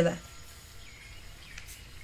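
The tail of a spoken word, then a pause holding only faint steady background noise with a couple of faint high chirps, about a second in and again shortly before the end.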